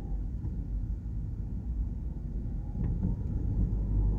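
Steady low rumble of a car driving along a paved road: engine and tyre noise.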